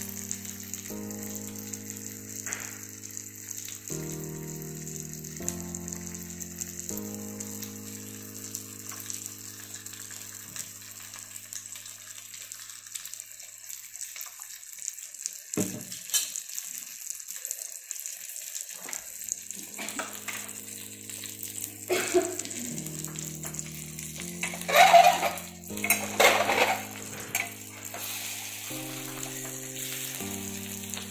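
Rava-coated butterflied mackerel shallow-frying in oil on a flat tawa, a steady sizzle under background music with slow held chords. Toward the end come a few louder scrapes and clinks as a spatula and tongs turn the fish.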